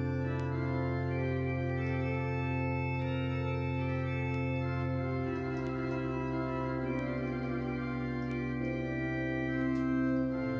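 Organ playing a slow, gentle French Baroque tierce en taille: a solo line in the left hand over soft right-hand accompaniment and long held bass notes. The bass changes about halfway through.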